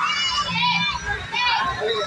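Children's high-pitched voices and chatter, mixed with crowd talk around them.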